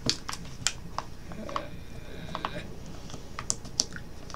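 Irregular light clicks and taps of a plastic snack package being handled and pried at by hand as it is opened.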